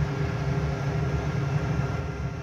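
Steady hum and whir of a Defro Sigma UNI 16 kW coal boiler running, its combustion-air blower feeding the flame of burning eco-pea coal on the burner.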